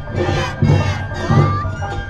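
Awa Odori dancers shouting their calls together in two short bursts, over the group's band: big drums beating about every 0.7 s and a high melodic line.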